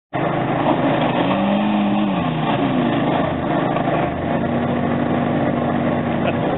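Old Citroën AX's engine under throttle as the car is driven over rough ground. Its pitch climbs and drops in the first couple of seconds, then holds steady.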